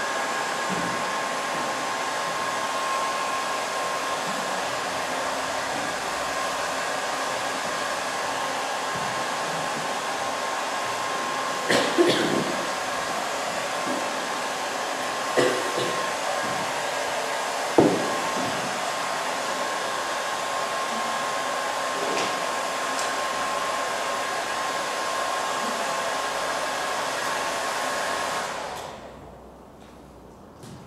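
Handheld hair dryer running steadily with a thin whining tone, then switched off near the end, dying away over about a second. Three brief knocks sound over it around the middle.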